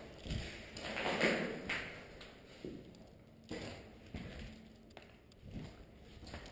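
Irregular footsteps scuffing and crunching on a concrete floor strewn with rubble, with a few soft knocks.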